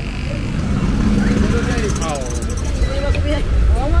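Low rumble of vehicle engines and street traffic, with people talking over it.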